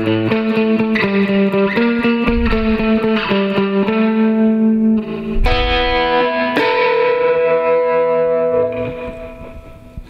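Electric guitar, a Jaguar-style offset guitar through an amplifier, playing a surf riff with fast repeated picking on the A string. About halfway through the picking stops, and the last notes ring on and slowly fade out near the end.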